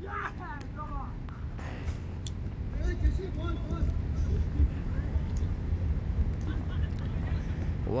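Faint distant voices of players calling across a cricket field over a low steady rumble. A nearer voice starts right at the end.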